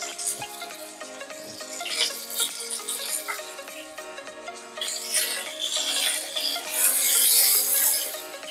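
Background music over chicken thighs frying in hot oil in a pan. About five seconds in the sizzling grows louder for a couple of seconds as the pieces are turned over with metal tongs.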